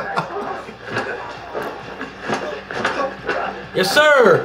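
Sound from a TV drama playing back: scattered voices and a few short knocks over a steady low hum.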